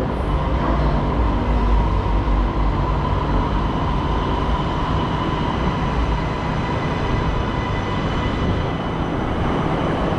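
MRT train standing at the station platform: a steady hum with a steady whine, and a deeper rumble in the first few seconds. The whine fades out near the end.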